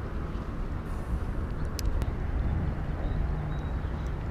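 Wind rumbling on the microphone, with a couple of light clicks about two seconds in.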